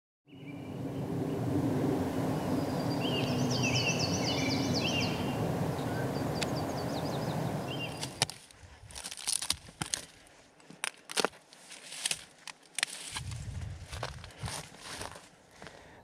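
Steady outdoor background noise with a bird singing a short phrase a few seconds in; from about halfway, irregular crunching and snapping of footsteps through brush and gravel.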